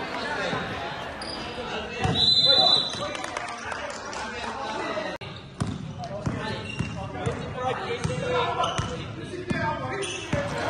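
Indoor basketball game in an echoing gym: a basketball bouncing on the hard court and players calling out. A brief, shrill high tone about two seconds in is the loudest sound.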